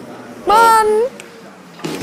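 A person's high-pitched, drawn-out exclamation of "Mann!", about half a second long and starting about half a second in, its pitch bending up and then down.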